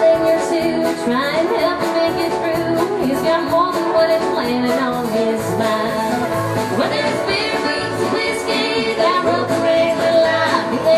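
Live country band playing a song: acoustic guitar, electric bass and drums with sung vocals, at a steady beat.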